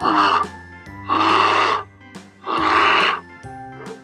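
Brown bear growling or roaring three times, each call about half a second long, over background music.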